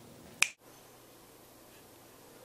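A single crisp finger snap about half a second in, after which the sound cuts abruptly to faint room tone with a low steady hum.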